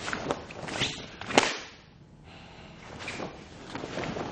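Karate gi snapping sharply with fast kata blocks and strikes: three quick cracks in the first second and a half, the last the loudest, then softer cloth rustle as the karateka moves into the next technique.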